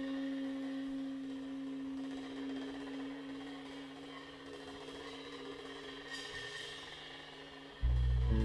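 Quiet passage of live jazz: one long held note slowly fades under soft cymbal shimmer. Loud low bass notes come in just before the end.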